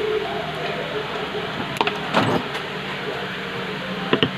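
Plastic spoons clicking and scraping against a plastic bowl a few times, with one louder scrape a little past the middle, over a steady background hum.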